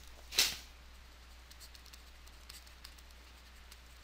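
Quiet room tone with a steady low hum. There is a short breath about half a second in, and a few faint ticks after it.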